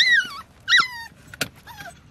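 Puppy whining: three short, high whines that rise and fall, with a single sharp click about one and a half seconds in.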